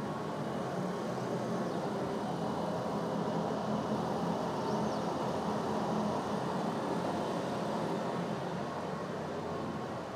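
Muse 3D CO2 laser engraver running a raster engraving job on a wooden plaque: a steady mechanical whir and hiss with a low hum underneath.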